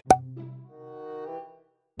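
A sharp pop, then a short musical tone of a few steady pitches that fades after about a second: an edited-in transition sound effect.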